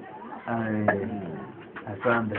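People's voices, with one low, drawn-out voiced sound held for most of a second about half a second in, and a couple of short sharp clicks.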